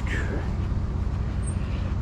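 A machine running steadily, a low rumble with a constant hum.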